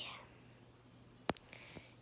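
Quiet room with one sharp click a little past halfway, followed by two much fainter ticks.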